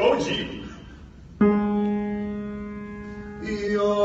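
A single piano note struck about a second and a half in, ringing and slowly fading. Near the end, men's voices come in singing.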